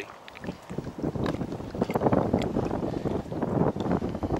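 Wind buffeting the microphone, a rough gusting rumble that swells after about a second, with a few faint clicks.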